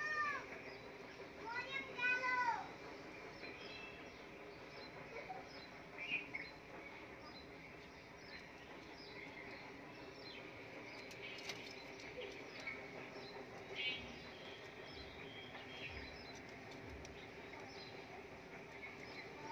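Small birds chirping faintly in the background: short high chirps repeated all through, with a louder arching, multi-note call around the first two seconds.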